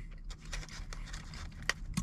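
Faint rustling and scraping handling noises in a small enclosed space, with a sharp click about three quarters of the way through.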